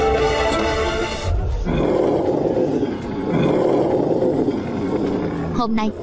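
Film soundtrack: music breaks off about a second in and gives way to a loud, rough roar that swells twice, a sound effect for a charging host. A voice begins right at the end.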